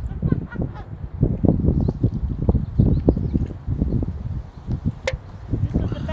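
Wind buffeting the microphone in gusts, with dry tall grass rustling.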